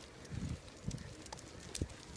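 Footsteps on a paved path: three soft, low thuds, the last one sharper, near the end.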